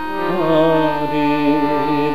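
Harmonium sounding a sustained chord, its reeds holding steady under a man's voice that comes in about a third of a second in, singing long, wavering held notes.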